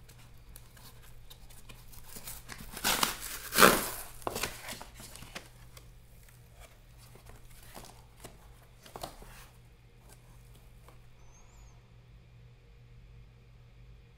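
Cardboard box of coin rolls being torn open by hand: a few loud rips of the flaps about three to four seconds in, then lighter cardboard rustling and scraping a few seconds later.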